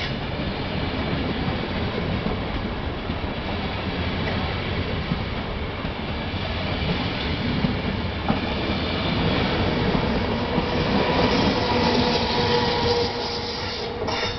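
A passenger train of Casaralta-built coaches rolls past close by as it pulls out, with a steady rumble of wheels on rail. It grows louder in the last few seconds, when a thin steady wheel squeal comes in. It starts to fade just as the last coach goes by.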